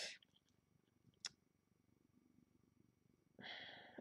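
Near silence: room tone, with one faint short click a little over a second in and a soft hiss near the end.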